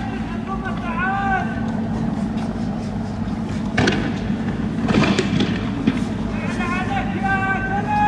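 Raised male voices shouting over the low steady hum of idling engines, with several sharp bangs between about four and six seconds in.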